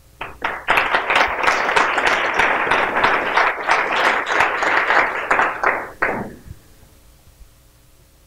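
Audience applauding. The clapping builds within the first second, holds steady, then dies away about six seconds in.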